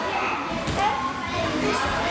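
Many children talking and calling out at once, echoing in a large hall, with two brief taps about a second apart.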